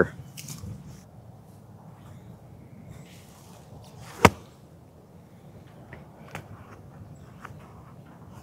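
A golf club swung on the tee, with one sharp crack of impact about four seconds in; otherwise faint outdoor background.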